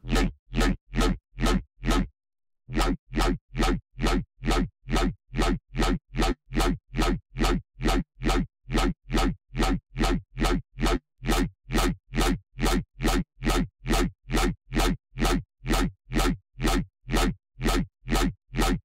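A messy dubstep bass synthesised in Serum, with a deep sub under distorted, phased noisy upper layers, plays a short repeated note about two and a half times a second. It stops briefly about two seconds in, then carries on.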